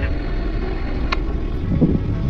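Car driving, heard from inside the cabin: a steady low rumble of engine and tyres on the road, with a single short click about a second in.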